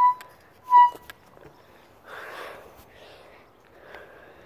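Playground spinner squeaking twice, two short high squeaks about a second apart as it starts to turn, followed by a soft rush of noise.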